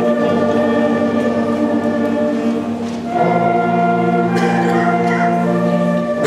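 Middle school concert band, flutes and other winds, playing held chords that change about three seconds in.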